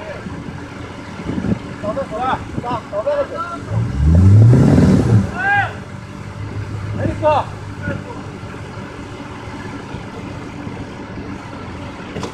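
An SUV's engine revs up briefly about four seconds in, its pitch climbing, then settles to a steady idle.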